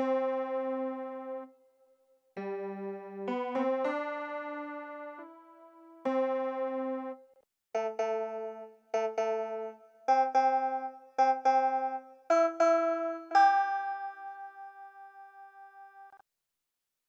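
Quilcom SIM-PF, a software synthesizer that models a pianoforte without samples, playing piano chords. The chords are struck one after another with short gaps between them, then a quicker run of short repeated chords, and a last chord is left ringing and fading near the end.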